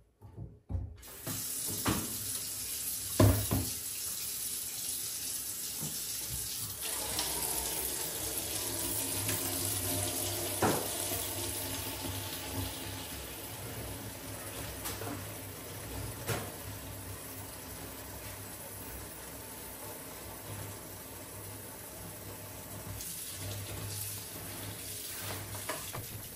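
Kitchen tap running steadily into a plastic washing-up bowl in a stainless steel sink, starting about a second in, with a few sharp clinks of dishes and glasses being handled.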